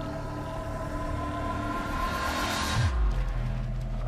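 Dark, tense trailer music: a sustained drone with a swell that builds and breaks about three seconds in. It drops into a falling deep boom and a low rumble that holds.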